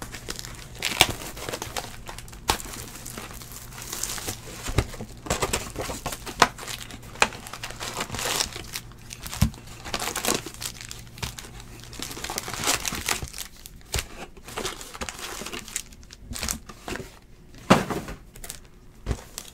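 Foil wrappers of 2018 Donruss Football trading-card packs crinkling and tearing as the packs are opened by hand, in an irregular run of crackles.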